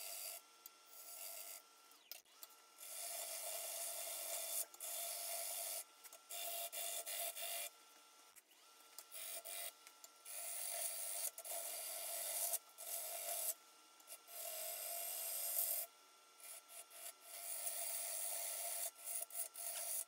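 A gouge cutting wet, green black walnut on a spinning lathe: hissing, scraping passes of one to two seconds each as shavings peel off, with short breaks between them. A faint steady whine runs underneath.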